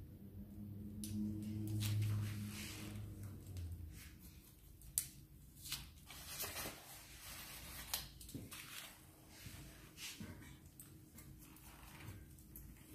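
Hair-cutting scissors snipping and a comb being handled in the hair: a series of sharp clicks and rustles, the sharpest about five seconds in. A low steady hum sits under the first few seconds.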